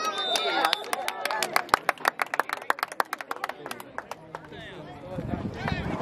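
Spectators clapping: quick, irregular claps for about four seconds, with a brief high whistle near the start and voices in the background. A low rumble comes in near the end.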